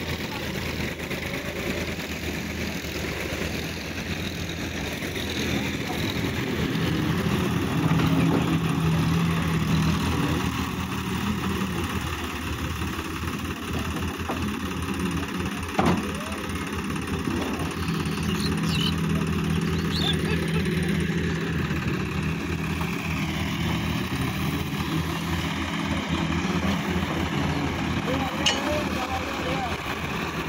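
Sonalika DI 750 tractor's diesel engine running while it pulls a tipping trailer through soft mud, its note swelling under load twice. There is one sharp knock about halfway through.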